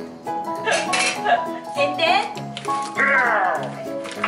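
Background music: a song with a singing voice over sustained instrumental notes, with a falling vocal glide about three seconds in.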